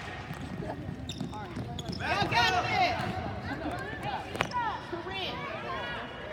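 Basketball game sounds on a hardwood court: distant voices calling out, and one sharp bounce of the ball about four and a half seconds in.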